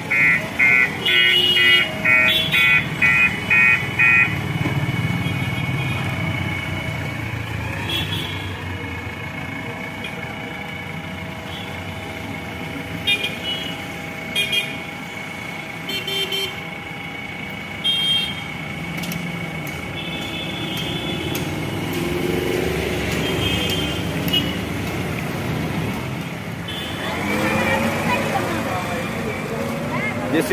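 JCB 3DX backhoe loader's diesel engine running as the machine drives along a street, with a fast run of electronic beeps, about two a second, for the first four seconds. Short vehicle horn toots sound several times in the middle, over steady street traffic.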